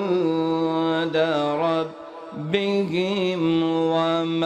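A man chanting Arabic Qur'anic recitation (tilawat) into a microphone in a melodic style, with long held notes and ornamented turns. There are two phrases with a short breath pause about two seconds in.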